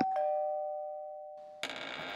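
Two-tone doorbell chime: a higher "ding" then a lower "dong", both ringing out and fading, cut off suddenly about a second and a half in.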